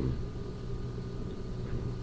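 A pause between words filled by the steady low hum and faint hiss of an old tape recording.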